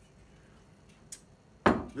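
A glass whiskey bottle set down on a wooden bar top with a single sharp knock near the end, after a faint click a little earlier.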